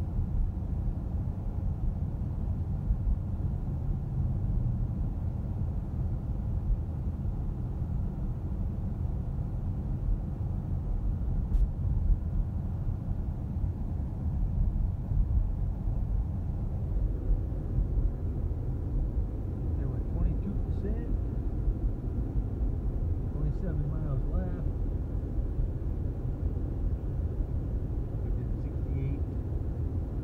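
Steady low rumble of tyre and road noise inside the cabin of a Tesla Model S 85D driving at about 35 mph, with no engine note from the electric drivetrain.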